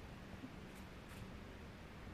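Quiet forest ambience: a faint steady low hum with two faint, short high-pitched ticks about a second in.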